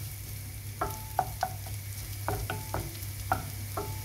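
Sliced ginger and garlic sizzling in hot oil in a nonstick frying pan, frying until browned. A wooden spatula stirs them, knocking and scraping against the pan about twice a second, and each knock rings briefly.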